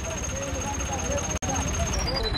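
People talking over the steady low rumble of a tractor engine running, with a brief cut-out in the sound about one and a half seconds in.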